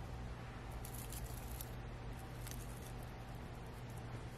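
Fine silica gel crystals shifting and trickling as fingers dig a dried zinnia out of the tub: faint scratchy rustles about a second in and again about two and a half seconds in, over a steady low hum.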